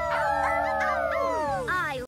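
Several cartoon puppy characters howling together, their voices overlapping in long, slowly falling howls that die away about one and a half seconds in.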